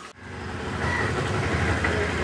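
Steady low rumble of a motor vehicle engine running, with street noise. It fades in after a brief break at the start and holds at an even level.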